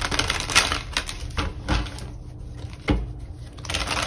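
Deck of tarot cards being shuffled by hand: a dense run of card clicks and rustle in the first second and a half, then a few single sharp taps.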